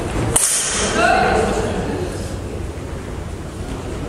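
One sharp crack from a messer strike in a sparring bout, about a third of a second in, trailed by a short bright hiss; voices follow.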